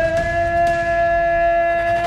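Loud intro sting for a logo animation: one long horn-like note held steady over a deep rumble.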